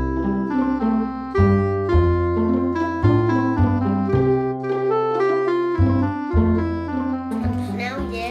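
Jazzy background music with a bass line under a melody, the notes and chords changing every half second or so. A child's voice comes in near the end.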